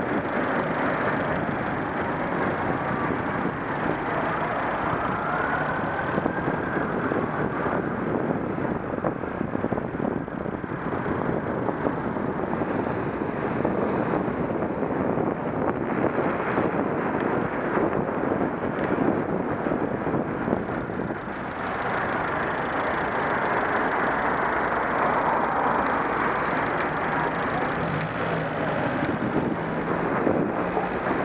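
Steady rush of wind over a helmet-mounted camera's microphone while cycling, mixed with the noise of road traffic.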